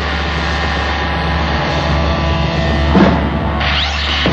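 Rehearsal-room punk band's amplified guitar and bass ringing out after the song's last chord, a steady distorted wash over a low amplifier hum, with one knock about three seconds in.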